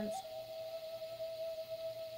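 Background music: a single steady sustained tone held at one pitch.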